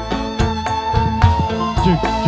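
Live dangdut tarling band playing: drums and bass keep a steady beat with guitar over it, while one high note is held with a slight waver across the whole stretch.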